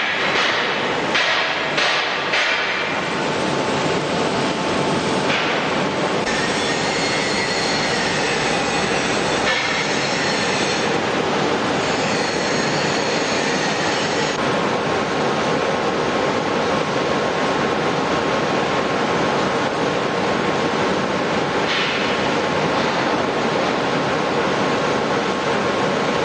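Steady industrial machinery noise from a heavy-equipment assembly line, with a few sharp metallic knocks near the start and high squealing tones in the middle.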